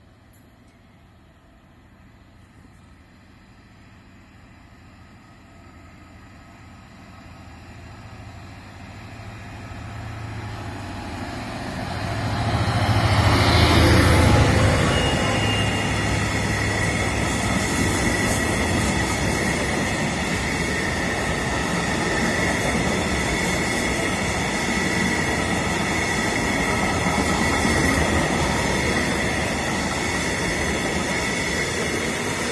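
Freight train of covered hopper wagons approaching and passing at speed close by: a rumble that swells for about twelve seconds and peaks as the head of the train goes by, then carries on as the steady rumble of the wagons with a thin high ringing tone over it.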